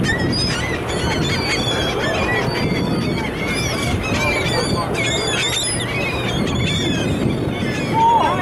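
A flock of gulls calling, many short overlapping calls throughout, over a steady low background noise.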